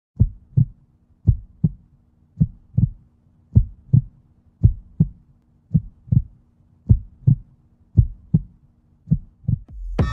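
Heartbeat sound effect: deep double thumps about once a second over a faint low steady hum, the beats quickening near the end.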